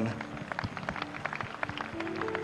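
Scattered applause from an audience: a patter of irregular claps, with a faint steady tone underneath.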